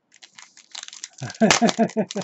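Foil trading-card pack crinkling and tearing as it is opened by hand, then a man laughing from a little past a second in.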